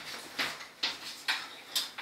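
Chalk tapping and scraping on a blackboard as letters are written: four short, sharp clicks about half a second apart.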